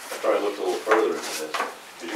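Indistinct talking: voices murmuring that the transcript did not catch.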